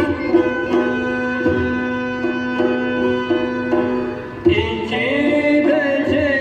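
Turkish folk song recording: an instrumental passage of long held melody notes over drum strokes, with a singing voice entering in an ornamented line about four and a half seconds in.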